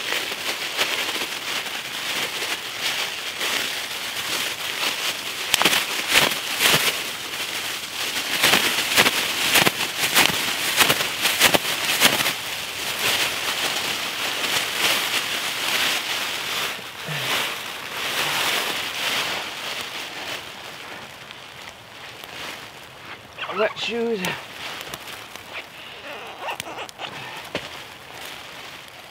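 Rustling and crinkling of gear and a bag being handled on dry leaf litter: a dense run of rustles and small crackles that eases off after about twenty seconds. A short vocal sound comes about three-quarters of the way in.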